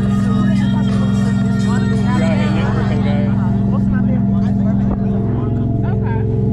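Steady low drone of a tour boat's engine heard on the open deck, shifting slightly about five seconds in, with passengers chatting over it.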